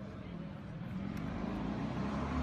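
A car driving by in the street, its engine and tyre noise growing steadily louder as it approaches, with voices in the background.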